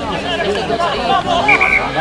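Several voices shouting and calling over one another, with a short high steady tone, like a whistle, about one and a half seconds in.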